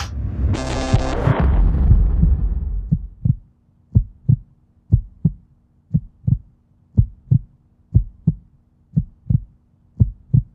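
Heartbeat sound effect: pairs of low thumps (lub-dub) about once a second. It follows a loud rumbling burst that dies away over about the first three seconds.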